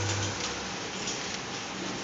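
Steady hum of a compression testing machine's hydraulic power unit, cutting off about a third of a second in once the concrete cube has failed, leaving a steady hiss of background noise.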